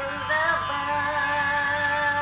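A woman singing Carnatic vocal music in raga Begada: a short wavering phrase that settles about half a second in into one long held note with a slight waver, over a steady drone.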